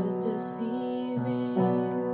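Piano accompaniment playing sustained chords, moving to a new chord a little over a second in, with a brief sung note from a woman's voice about half a second in.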